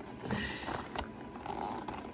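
Cardboard box and clear plastic blister of a toy action-figure package being torn open and handled: a scatter of crackles and clicks, with a short tearing rasp about half a second in.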